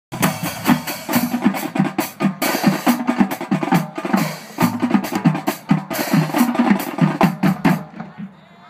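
Marching drumline playing a fast cadence: snare drums over bass drums, with cymbal crashes. The playing stops abruptly just before the end.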